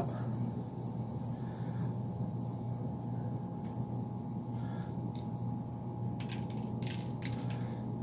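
Steady low background hum, with a few faint light ticks late on as pepper seeds drop onto a paper plate.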